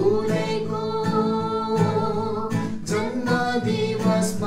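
A man and a woman singing a song together, held notes over a strummed acoustic guitar.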